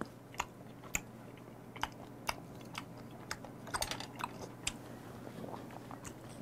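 Close-miked mouth chewing: soft, wet clicks and smacks, irregular, about two a second, as a man chews a piece of raw skate liver.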